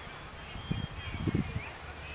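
Quiet open-air ambience with a few faint bird chirps and some short low thumps.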